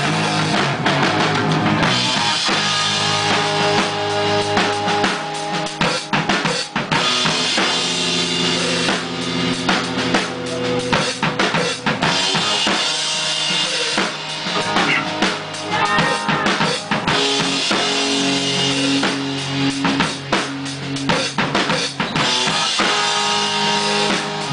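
Live rock band playing: a drum kit with bass drum and snare hits under electric guitar.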